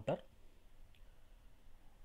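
A single faint computer mouse click about a second in, against quiet room tone.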